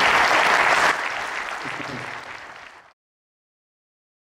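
Audience applauding in a theatre; the applause drops suddenly about a second in, then fades out and ends about three seconds in.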